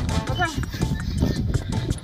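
People and dogs running on packed snow, with rapid crunching footfalls, over background music. A brief falling cry sounds about half a second in.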